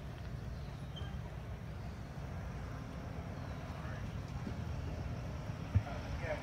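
Steady low outdoor rumble with faint distant voices, and a single sharp knock near the end.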